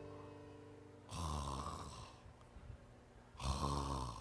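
A man imitating snoring through a headset microphone: two snores, the first about a second in and the second near the end, with a pause between them.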